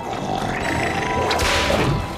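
Cartoon whoosh sound effect: a noisy rush that builds and is loudest just before it cuts off near the end.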